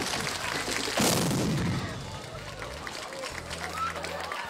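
A sudden loud blast about a second in, trailing off over about a second, amid the noisy din of a rock band's stage-wrecking finale with faint held feedback tones.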